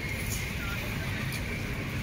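Steady low rumble of outdoor background noise, with no clear voices.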